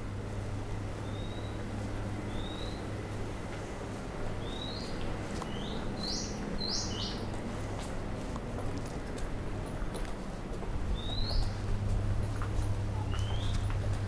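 Bird calls in short rising chirps, scattered through the stretch with a quick run of several in the middle, over a steady low hum.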